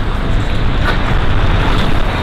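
Steady road traffic noise: a loud, even rumble of vehicles with no single event standing out.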